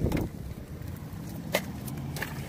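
Car door being opened by hand: a clunk from the latch at the start, then a sharp click about a second and a half in, over a low steady rumble.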